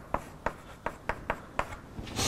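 Chalk writing on a blackboard: a quick, uneven series of sharp taps and short strokes, about eight in two seconds.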